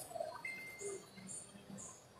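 Quiet ambience of an exhibition hall: faint room noise with scattered small sounds, and a brief thin high tone about half a second in.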